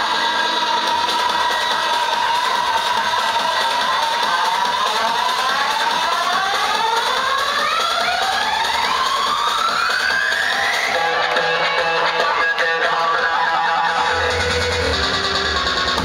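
Electronic dance music in a breakdown with the bass and kick drum dropped out: several synth tones sweep upward over about seven seconds, the texture changes about eleven seconds in, and the bass comes back in near the end.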